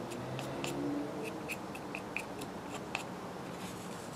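Faint scraping and small clicks of a whittled wooden stirrer spreading epoxy over a plastic bottle cap and dabbing it from a piece of cardboard, with a quick run of light ticks in the middle.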